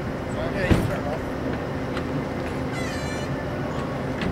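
Two short voice sounds, a brief rising one about half a second in and a longer wavering one about three seconds in, over a steady background noise.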